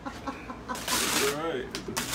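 A woman laughing in short, breathy, cackling bursts, with gasps of breath between them.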